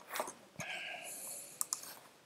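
A few soft clicks from operating a computer, ending with two sharp clicks in quick succession near the end, with a faint rustle in between.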